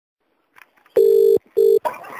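Telephone ringing tone heard down the line by the caller: a faint click, then two short steady electronic beeps in quick succession, the British-style double ring. It signals that the called phone is ringing and has not yet been answered.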